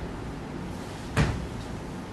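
A single short knock about a second in, against the quiet hush of a stage hall.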